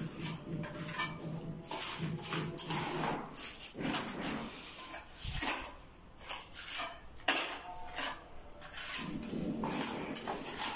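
A hand trowel scraping and clinking as cement mortar is scooped from a metal bucket and pressed and smoothed into a wall chase: a run of irregular scrapes and knocks.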